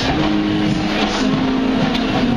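A rock band playing loud amplified music, with held low notes that shift in pitch in steps.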